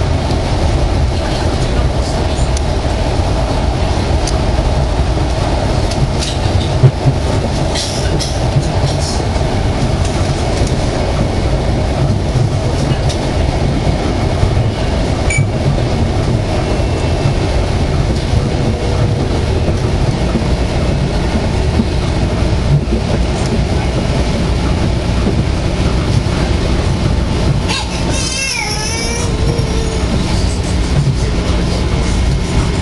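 Metro-North commuter train running on elevated track, heard from inside the passenger car as a steady loud rumble with occasional clicks. Near the end a wavering squeal rises over it as the train comes into a station.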